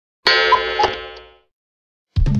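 Logo-intro sound effect: a bright, shimmering chime that starts suddenly about a quarter second in, with a couple of short pings in it, and fades away over about a second.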